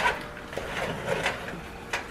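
Wooden spoon stirring sticky marshmallow-coated crisped rice cereal in a pot: a sharp knock right at the start, then soft, irregular stirring strokes.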